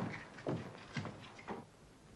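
Footsteps on a hard floor: three steps about half a second apart, each a little fainter.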